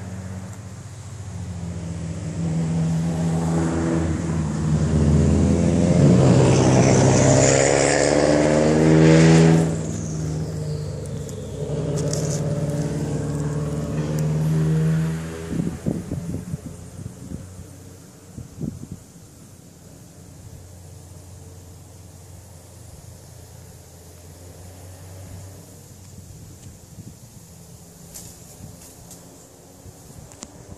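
A motor vehicle's engine passing close by, its pitch shifting as it goes, loudest a few seconds in. It stops abruptly about halfway through, leaving quiet outdoor background with a few handling clicks.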